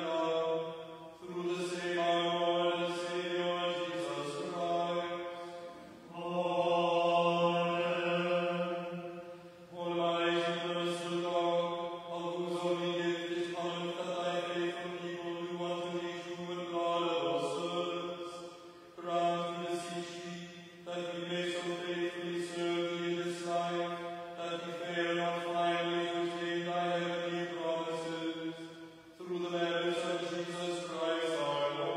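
Liturgical chant: a voice intoning in long phrases on a mostly steady reciting pitch, with only occasional shifts of note and short breaks for breath every few seconds.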